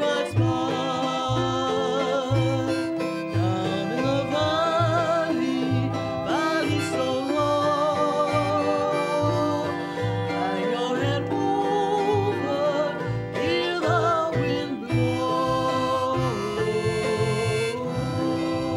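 Jug band music: a washtub bass plucking a steady bass line, about two notes a second, under plucked strings and a wavering lead melody with vibrato.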